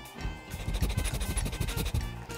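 A crunchy dry biscuit being chewed close to the microphone: a quick run of crisp crunches from about half a second in, over steady background music.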